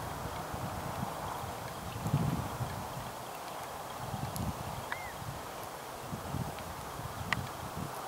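Outdoor ambience: a steady hiss with irregular low thumps, one short high chirp about five seconds in and a sharp click near the end.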